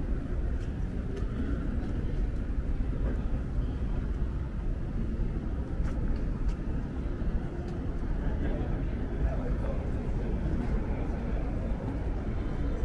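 Outdoor urban ambience on a pedestrian plaza: a steady low rumble with faint voices of passers-by and a few faint clicks.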